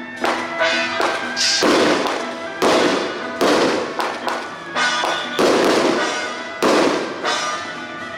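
Music with sustained tones, cut through by a run of loud, sudden crashing bursts roughly once a second, each one dying away quickly.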